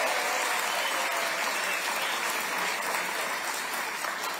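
A large audience applauding: steady, dense clapping that eases slightly near the end.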